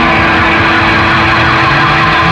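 Live rock band playing loudly: distorted electric guitar holding a steady note over drums.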